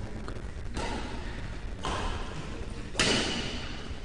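Steady hiss of a badminton hall's room noise, with a few soft thuds of play on the court.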